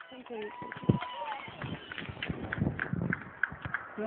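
Footsteps of many runners setting off together at the start of a race, irregular and overlapping, mixed with scattered voices and shouts from the crowd.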